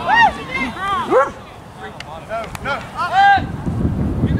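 Dog barking repeatedly: about eight short, high barks spread across a few seconds. Wind buffets the microphone near the end.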